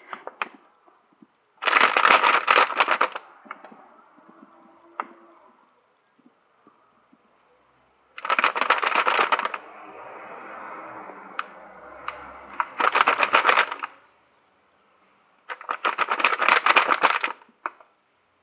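Four bursts of dense crackling and crunching, each one to two seconds long, with a softer rustle between the second and third and a few single clicks.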